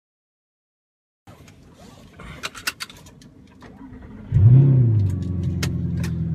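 A few sharp clicks and rattles, then about four seconds in an Audi R8 V8 with an Armytrix valved exhaust starts up: a short rev flare that rises and falls, settling into a steady idle, heard from inside the cabin.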